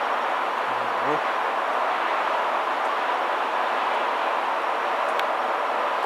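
Diesel engine of a Volvo BM L160 wheel loader running steadily, heard close at the open engine bay as an even, unchanging noise.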